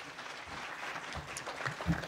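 Audience applauding, with a few low thumps near the end.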